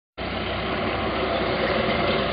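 Tracked BMP infantry fighting vehicle's diesel engine and tracks, a steady rumble with a fast low pulse, growing slightly louder as it approaches.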